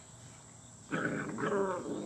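Puppies play-wrestling, with one puppy vocalizing in short, wavering noises that start about a second in.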